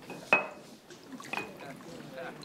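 Glassware clinking on a bar as whiskey is served: two sharp clinks with a short high ring, about a second apart, with liquid being poured.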